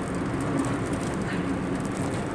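Steady drone of a car driving at road speed, heard from inside the cabin: tyre and engine noise rolling across the steel suspension-bridge deck.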